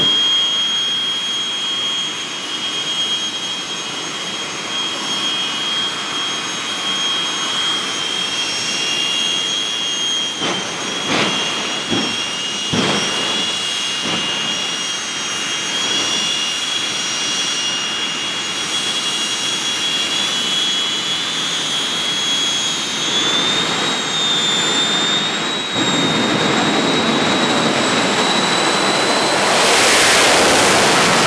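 Jet dragsters' jet engines running at the start line, a steady high whistling whine, with a few sharp cracks around the middle. Over the last several seconds the whine climbs in pitch and grows louder as the engines are run up.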